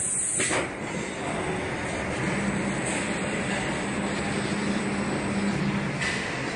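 PCB vacuum loader running: a pneumatic air hiss cuts off with a click about half a second in, then steady machine running noise, with a low hum through the middle.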